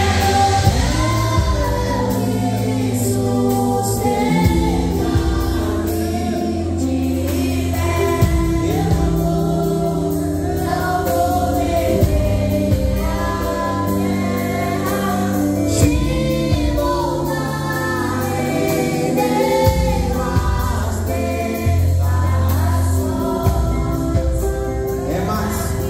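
Live Christian worship song: a boy singing into a microphone over the PA, backed by a live band on electronic keyboard and guitar.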